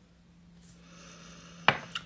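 A perfume bottle's spray pump pressed once, with a sharp click and a short spritz near the end, after a faint hiss.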